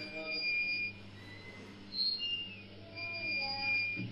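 Quiet background music: high, held notes of about a second each, a few short gliding tones in between, over a steady low hum.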